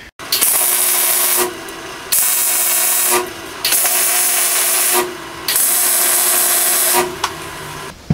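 Arc welder tack-welding steel angle iron: four welds of about a second each, each a steady crackling hiss that starts and stops cleanly, with short pauses between.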